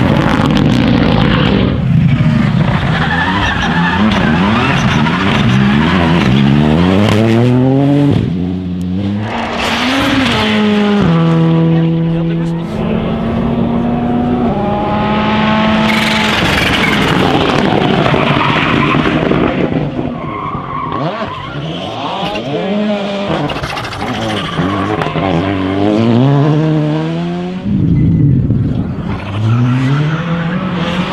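R5 rally cars with turbocharged four-cylinder engines driving hard through a tarmac stage one after another. Each engine climbs in pitch as it revs through the gears, then falls as the car brakes and downshifts into a corner, with some tyre noise.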